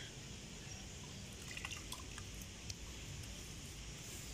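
Water trickling faintly from a garden hose into a dug earth pit, with a few small drip-like ticks in the middle.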